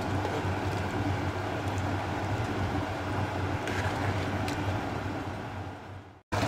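Steady rumbling of a large pot of rice and chicken stock boiling hard on a high gas flame, with a couple of light clicks from a steel spoon stirring against the pot. The sound fades near the end.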